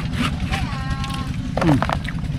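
A steady low engine rumble runs under a man's few short spoken words in the second half.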